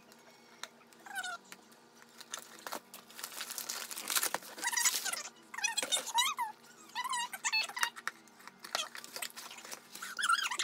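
Paper packaging rustling and crinkling as an item is unwrapped, with small handling clicks. Several short, high, wavering squeaks come about a second in and again between about four and eight seconds in.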